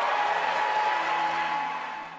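A large audience applauding, with music faintly underneath, fading away near the end.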